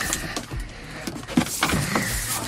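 Loose automotive wiring being handled and pulled from the car: rustling and scraping of wires, with scattered light clicks and one sharp knock about one and a half seconds in.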